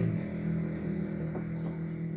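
A motor engine running steadily, a low hum that slowly fades.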